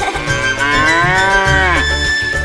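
A cow's single long moo, a cartoon sound effect whose pitch drops away at the end, over the backing music of a children's song.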